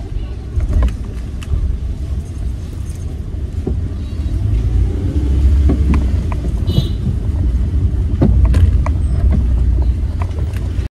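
Steady low rumble of a car on the move, heard from inside the cabin, with scattered short knocks and rattles. It grows louder from about halfway through.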